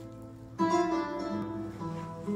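Flamenco acoustic guitar music: held notes ringing, then a loud strummed chord just over half a second in and another strum near the end.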